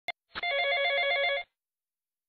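Electronic telephone ring: one trilling ring lasting about a second, then silence before the next ring, with a short click just before it.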